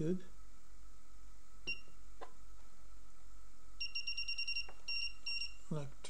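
Front-panel beeps of a digital function generator as its output amplitude is raised: one short high beep, then a quick run of about ten beeps, and a few more just after.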